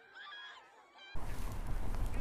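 Faint high-pitched shouts from a crowd in a phone video of a school fight. About a second in, an abrupt cut to steady outdoor street noise, a low rumble of traffic and wind on a live news microphone.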